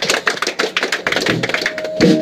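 Rapid, uneven tapping and clicking between songs at a live band show, with an electric guitar note starting to ring near the end.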